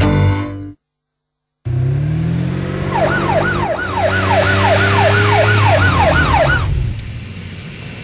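Music cuts off, and after a second of silence a steady low rumble comes in. Over it a siren cycles fast for about four seconds, jumping up sharply and falling back roughly three times a second, then stops.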